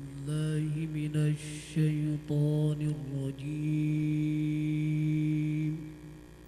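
A man chanting the Quran in melodic recitation: several short phrases, then one long held note that stops just before the end.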